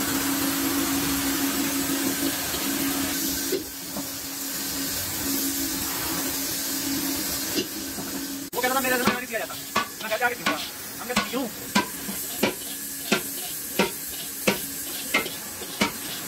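A pointed steel tool scraping around the inside of a large hand-hammered metal degh bowl, over a steady hiss and a low hum. About halfway through, the scraping gives way to sharp regular clicks, roughly three every two seconds, as the tool works the metal.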